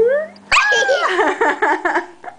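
A toddler's voice: a hum sliding up in pitch, then, after a sharp click about half a second in, a loud, high squeal that quavers rapidly up and down for over a second.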